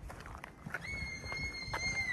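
A single steady, high whistling tone, held for about a second and a half and dipping slightly in pitch as it ends, with a few soft footsteps.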